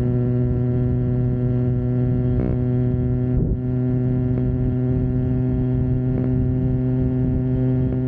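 Phantom 85 two-stroke motorized-bicycle engine running at a steady high speed under way, an even drone that holds one pitch with a low rumble underneath.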